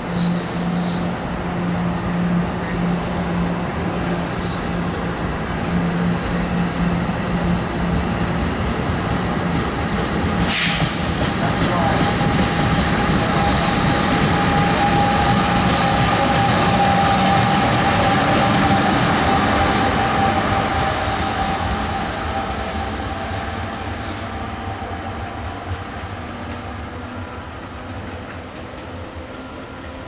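NJ Transit Multilevel coach train with a trailing ALP-46A electric locomotive rolling past at low speed, its wheels rumbling on the rails, with a brief high squeal in the first second. The noise swells as the locomotive passes in the middle, with a steady whine, then fades in the last few seconds as the train moves away.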